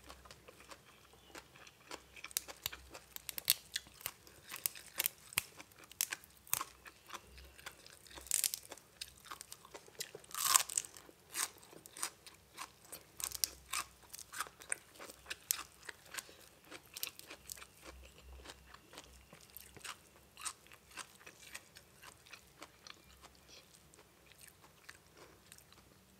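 Close-miked chewing of crisp raw greens: a long run of short, sharp crunches and wet clicks, with a louder crunch about ten seconds in.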